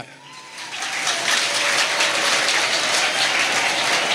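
Audience applauding, swelling over the first second and then going on steadily.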